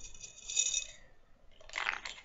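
Metal T-pins clinking together as they are handled, a short high metallic jingle in the first second, followed by a brief scratchy rustle near the end.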